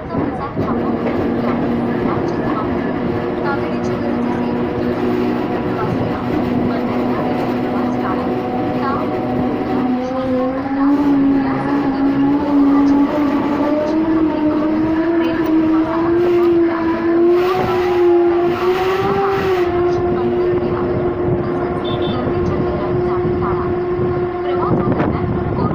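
Mumbai local electric train running, with wheel-on-rail rumble and a steady whine that steps up in pitch about ten seconds in, wavers for a few seconds, then holds steady.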